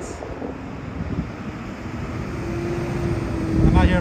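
Street traffic: a low rumble with a steady vehicle engine hum that comes in about halfway and grows a little louder.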